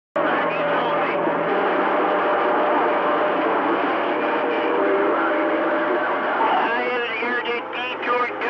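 CB radio receiving on channel 28: several distant stations' voices come through jumbled together in static and cannot be made out. A steady tone runs underneath them.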